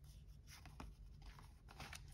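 Faint sliding and brushing of large tarot cards moved over one another in the hands, with a few soft scrapes about half a second in and again near the end.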